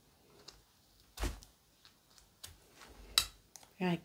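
A handful of short, sharp clicks and knocks, the loudest about a second in and again near three seconds, as a kitchen knife and fingers work at a vinyl reborn doll's limb joint to pull out a tight fastener.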